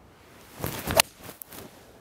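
A TaylorMade P790 UDI 17-degree driving iron (2-iron) swung and striking a golf ball off the tee, a low 'stinger' shot hit with a descending blow. A building swish of the downswing ends in one sharp crack of impact about a second in, followed by a few faint ticks.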